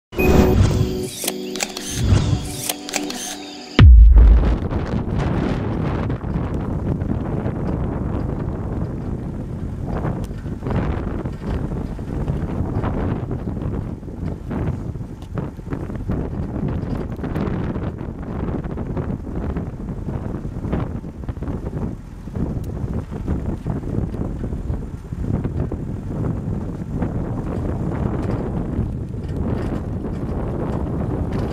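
A short music intro that ends in a loud low boom about four seconds in. Then a car drives along a rough dirt road: steady engine and tyre rumble with frequent knocks and rattles from the bumps.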